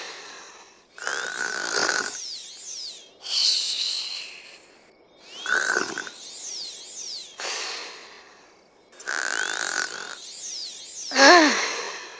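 Cartoon-style snoring: a snore and a whistling breath repeat about every one and a half to two seconds. A brief voiced sound comes just before the end.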